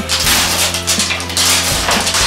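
Wrapping strip being torn and ripped off a plastic surprise toy egg in several short rips, over background music.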